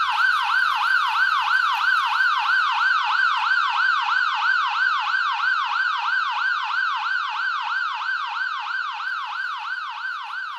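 Police car siren in its fast yelp, the pitch sweeping up and down three to four times a second, slowly fading toward the end.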